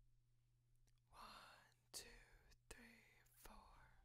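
A faint whispered voice, four short words at an even pace, over a low steady hum.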